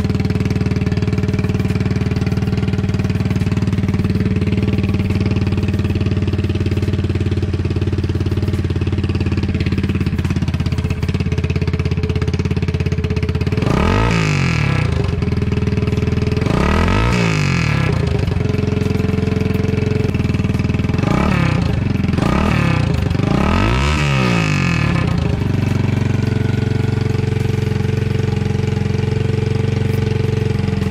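Icebear Champion 125cc single-cylinder four-stroke mini bike idling steadily through its aftermarket My Trail Buddy exhaust. About halfway through it is revved four times, two quick blips, a short pause, then two more, each rising and falling back, before it settles to idle again.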